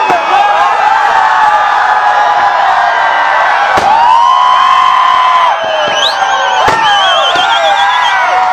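Fireworks going off, with sharp bangs about 4 s and 6.5 s in, over a loud crowd of overlapping voices, whistles and long held horn-like tones.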